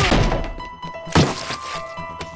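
A heavy thud with a deep rumble at the start, then a sharp knock about a second later, over background music with held notes.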